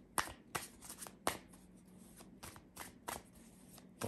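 A tarot deck being shuffled by hand: an irregular string of sharp card snaps and slaps, the two loudest near the start and about a second in.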